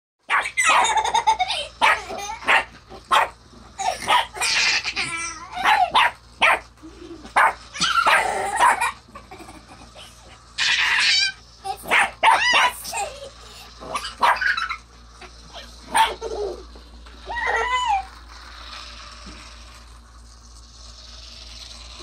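Lhasa Apso puppy barking and yipping over and over in short, loud bursts, falling quiet for the last few seconds.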